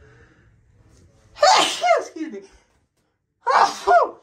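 A person sneezing twice, about a second and a half in and again near the end, the first sneeze the longer of the two.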